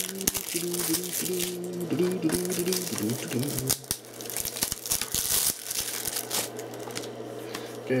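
Plastic shrink-wrap crinkling and tearing as it is peeled off a Blu-ray case, a run of crackles that thins out after about five seconds.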